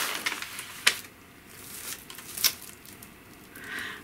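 Kraft paper and bubble wrap rustling and crinkling as a bubble-wrapped parcel is slid out of its paper wrapper, with two sharp crackles, one about a second in and one midway.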